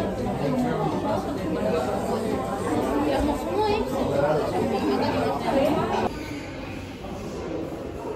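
Chatter of other diners' conversations filling a restaurant dining room, dropping to a quieter background about six seconds in.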